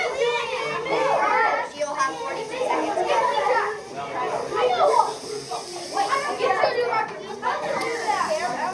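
Several children's voices talking and calling out over one another.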